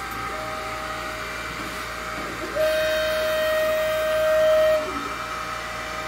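xTool D1 laser engraver's stepper motors whining at a steady pitch as the laser head moves along the frame outline of the job. The whine is fainter for the first couple of seconds, then louder and slightly higher from about two and a half seconds in until about five seconds.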